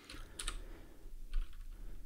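A few isolated keystrokes on a computer keyboard, soft clicks spaced apart, over a faint low hum.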